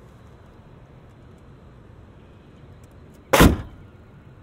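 The hood of a 1973 Mercedes-Benz 450SEL (W116) is slammed shut: one heavy, solid thud a little over three seconds in. It closes like a bank vault.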